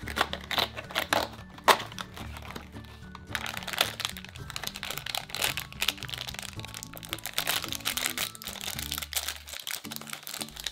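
Crinkling and rustling of foil blind-bag wrappers being handled and opened by hand, with soft background music underneath.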